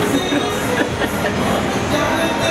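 Steady, echoing din of a busy shopping-mall atrium.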